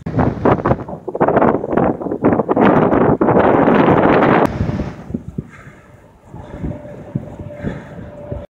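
Strong wind buffeting the microphone in a heavy rumbling rush, loudest for the first four and a half seconds, then easing to lighter gusts.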